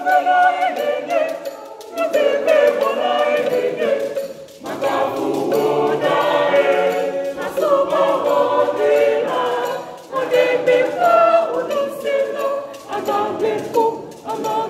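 A church choir of mixed young voices singing a cappella, in phrases with short breaths between them.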